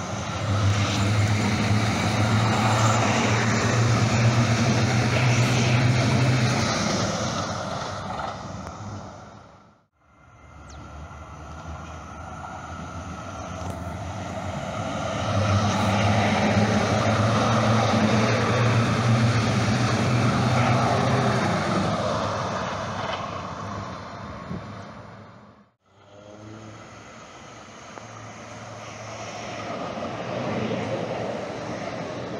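Calgary Transit CTrain light-rail trains running past a station platform: a steady low hum with the rush of wheels on rails, swelling and then fading as a train goes by. This happens twice, each broken off by an abrupt cut, and a quieter stretch near the end.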